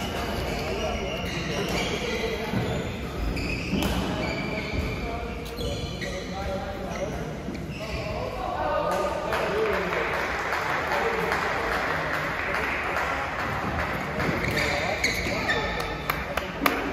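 Badminton doubles play in an echoing sports hall: sharp knocks of rackets and shuttlecock and thuds of feet on the court, mixed with voices. A sustained noisy stretch runs through the second half.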